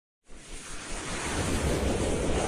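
Whooshing sound effect from a logo intro. Rushing noise comes in about a quarter second in and swells louder, with a low rumble under it.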